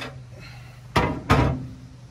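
Two loud, sharp knocks about a third of a second apart, a second in, with a lighter click at the start, over a steady low hum.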